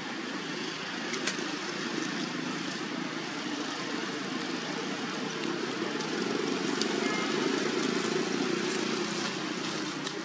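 A steady distant engine drone that grows a little louder about two-thirds of the way through.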